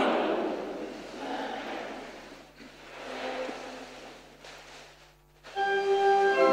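A spoken voice dies away in the long echo of a large cathedral, followed by a few seconds of soft, indistinct congregation noise that almost falls silent. About five and a half seconds in, a church organ comes in loudly with sustained chords.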